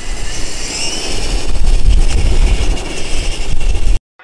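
A 1/5-scale RC rock crawler's motor whining faintly as it drives, under a loud low rumble that grows louder about one and a half seconds in.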